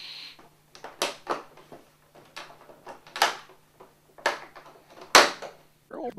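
A series of separate knocks and rustles, about seven in six seconds, from a cake and its tray being handled on a small wooden table; the sharpest and loudest comes near the end.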